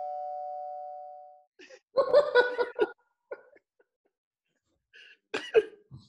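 A doorbell-like chime, two tones sounding together and fading out over about a second and a half, marking the guests' entry. Then a loud burst of laughter from several people about two seconds in, and more laughter near the end.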